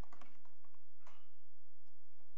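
Computer keyboard typing: a quick cluster of key clicks at the start, then a few scattered taps, over a steady low hum.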